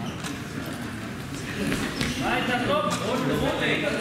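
Voices calling out in a large hall, getting louder and busier about halfway through, with a few sharp knocks in the first half from the wrestlers grappling on the mat.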